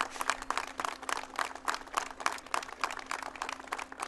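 Audience applauding: many hands clapping in a dense, even patter.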